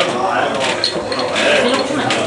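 Indistinct talking: voices in the room, not clear enough to make out words.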